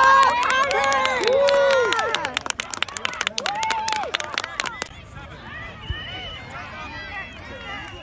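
Spectators shouting and cheering over each other, with a few seconds of rapid clapping. The cheering and clapping die away about five seconds in, leaving a murmur of crowd chatter.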